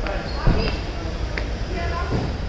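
A single thump about half a second in over a steady low rumble, with faint voices in the background.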